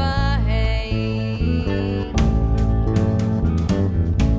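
Folk-band song with acoustic guitar and bass guitar. A held melody note slides down at the start, and a fuller, rhythmic section with a steady beat comes in about two seconds in.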